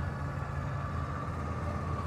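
Electric motor of a powered basement storage tray running as the tray slides out of the motorhome's compartment: a steady low hum with a faint, thin high whine over it.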